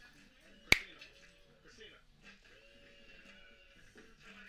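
A single sharp click about three-quarters of a second in, much louder than the rest, over quiet music and faint dialogue.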